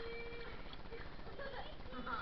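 Several people's voices, talking and calling out, over water sloshing and slapping close to a camera at the surface of a swimming pool.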